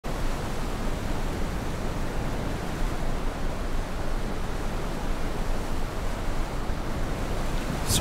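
Steady rush of ocean surf and wind: an even, unbroken noise with no distinct single wave breaking.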